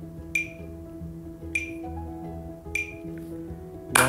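Metronome ticking three times, evenly about a second and a fifth apart, each tick short with a brief ring, as a count-in to the beat. Soft background music with held chords runs underneath.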